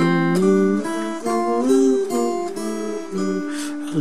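Acoustic guitar played with a pick: slow, single strums of a ballad chord progression, each chord left to ring before the next.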